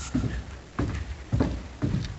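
Footsteps going down bare wooden stairs: four thudding steps, about two a second.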